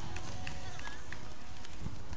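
Outdoor ambience on a sandy beach court: a steady low rumble of wind on the microphone, with faint distant voices and a few light ticks. No ball is struck.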